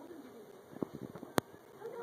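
Soft, low cooing vocal sounds, with a few light clicks and one sharp click about one and a half seconds in.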